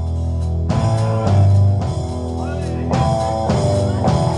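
Live rock band playing an instrumental passage between sung lines: loud electric bass and guitar chords over drums, the chords changing about once a second.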